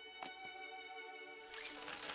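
Quiet, gentle orchestral string score holding sustained notes. About one and a half seconds in, a rustle of gift-wrapping paper being torn open joins it.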